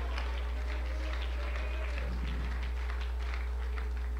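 Steady low electrical hum on the recording, with faint voices and scattered claps from the congregation behind it.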